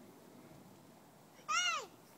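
A toddler's short, high-pitched vocal call that rises and then falls in pitch, about one and a half seconds in.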